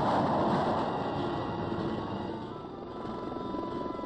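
Military aircraft engine noise, loudest in the first second or so and then easing off, over background music.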